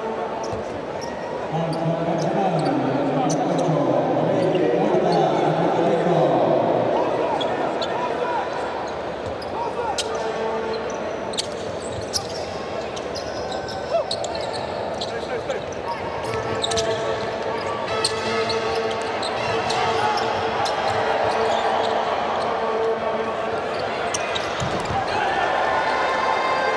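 Live basketball game sound: the ball bouncing on the hardwood court and scattered sharp knocks of play, with voices calling in the arena, loudest in the first few seconds.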